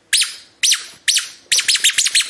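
Rubber squeaky toy squeezed over and over: four short high squeaks about half a second apart, then a quicker run of squeaks near the end.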